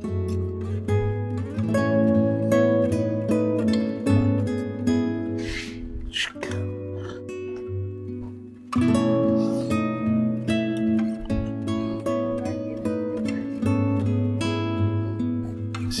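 Acoustic guitar music, a run of plucked notes over sustained chords, with a short lull a little over eight seconds in before it picks up again.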